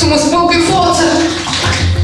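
Tap water running into a stainless-steel sink and splashing as hands wash in it, with a person's voice over it.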